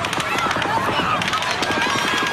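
Rapid rifle fire, many shots a second in a fast, continuous string, heard in a field recording under a background of crowd voices.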